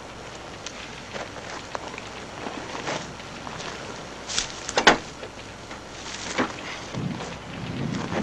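A burning wagon crackling and hissing steadily, with a few sharp knocks and clatters near the middle.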